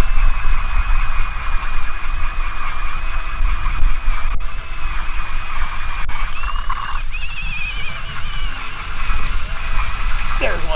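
Wind buffeting the microphone out on open lake ice, a steady rumbling rush with a thin, wavering high whine running through it.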